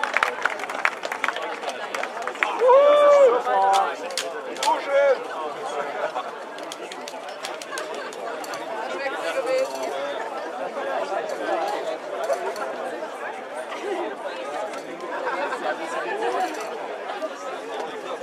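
Indistinct chatter of several people talking at once, with a short loud call from one voice about three seconds in.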